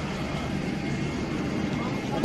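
Steady airliner cabin noise, with faint voices in the background.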